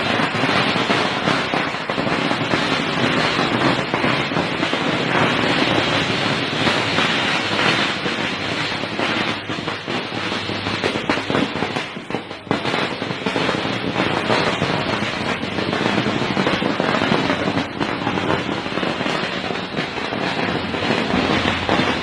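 A long string of firecrackers (a ladi) going off in one unbroken, rapid crackle of small bangs, so dense that the reports run together. It dips briefly about halfway through.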